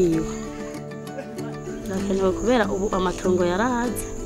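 A woman speaking in Kirundi over soft background music with long held tones; her voice comes in about halfway through.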